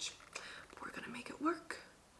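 A woman whispering and muttering quietly to herself in short, breathy fragments.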